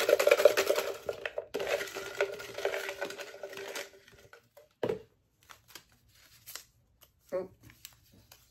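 A clear jar of folded paper prompt slips being shaken, rattling densely for about four seconds with a brief break, then quiet paper crinkling and small clicks as one slip is picked out and unfolded.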